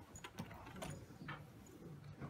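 Faint clicks and small rattles from a handheld antenna analyzer being handled, a few separate clicks over about two seconds, over a low steady hum.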